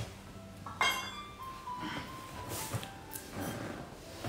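Glass bottles clinking against each other about a second in, with a ringing tone after and a few softer knocks, as a bottle is taken from a crowded bar shelf.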